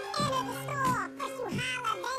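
Hip-hop track with sped-up, high-pitched chipmunk-style rapping over a steady beat and bass line.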